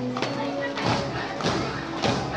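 Background voices with a held musical tone, then several dull thumps: one about a second in, another halfway through the second, and one at the end.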